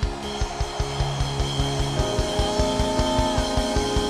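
Church praise-band music: sustained keyboard chords over a fast, even drum beat, with the chord changing about two seconds in.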